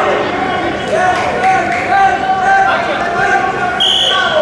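Several voices shouting over one another in a large, echoing hall, from coaches and spectators. Near the end a referee's whistle gives a sharp, steady blast.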